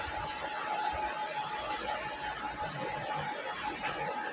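Steady room noise: an even hiss with a faint, steady high hum running under it.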